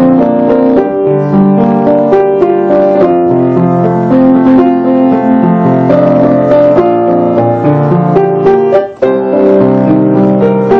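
Piano played with both hands: a flowing melody over sustained chords, with a momentary break in the sound near the end.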